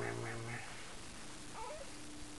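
An adult voice holding one long, low, steady note, a drawn-out call that ends about half a second in. About a second later comes a brief, faint infant coo.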